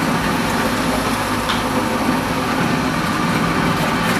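Steady hum of a VFD-driven water pump, with water flowing through the pipework of a check-valve test loop.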